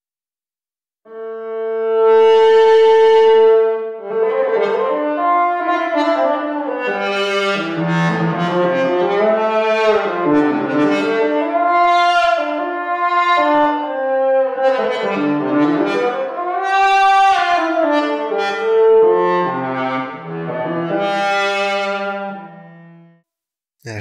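Synthesized cello patch in Surge XT, a pulse wave through a lowpass filter, played one note at a time under expressive pressure control. It opens with one long held note, then plays a melodic line with slides between notes, and stops about a second before the end. The playing tests how the freshly reshaped pressure curve makes the note swell.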